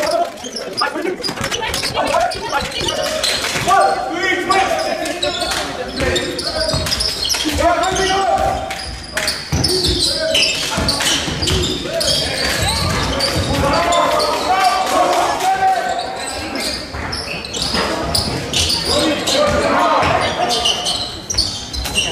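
Basketball bouncing repeatedly on a sports-hall floor during play, with players' shouted calls ringing through the echoing gym.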